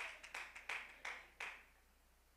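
Faint scattered handclaps from a church congregation, about three a second, dying away after about a second and a half.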